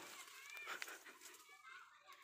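Near silence: faint background ambience with a few faint, short, high-pitched gliding sounds.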